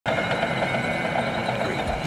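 M1A2 SEPv3 Abrams tank driving, its gas-turbine engine running steadily with a thin high whine over the noise of the running gear.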